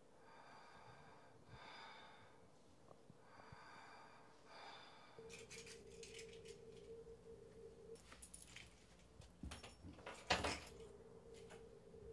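Faint, wheezy breathing close to the microphone, three or four slow breaths. It is followed by small clicks and knocks of objects being handled, the sharpest near the end, over a steady low hum.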